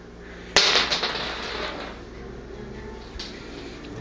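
A single sharp clink or knock of a hard object about half a second in, ringing briefly as it fades, then only low room noise.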